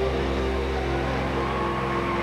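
Ambient electronic band music played live: long held chords over a steady low drone, moving to a new chord just after the start.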